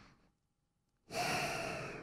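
A man's long, audible breath, about a second long, starting halfway in after a near-silent first second.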